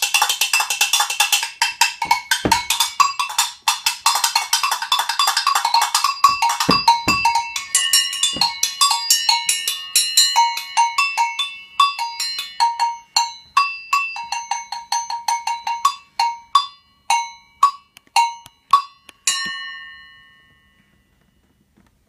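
Brazilian agogo bell struck with a stick in a fast, dense rhythm that thins after about eight seconds into spaced, ringing strikes coming further and further apart. The last strike rings on and fades away.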